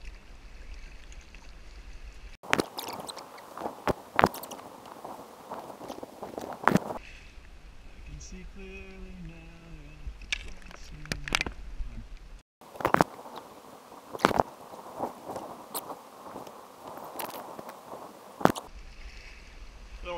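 Kayak paddle strokes on fast floodwater: irregular splashes and sharp knocks over a steady rush of water, with low wind rumble on the microphone at times.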